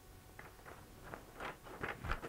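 Faint handling noises: soft rustling and light knocks of paper and a paper shredder's plastic housing being handled, a little louder toward the end.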